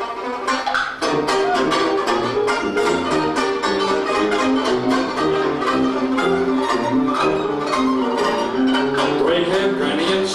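Live 1920s-style hot jazz band playing an instrumental passage: banjo strumming chords on a steady beat over a sousaphone bass line, with horns holding sustained notes. The band eases off briefly for about the first second, then comes back in at full level.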